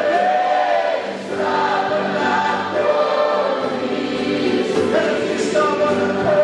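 A group of worshippers singing a worship song together, many voices holding long notes, with a brief dip about a second in.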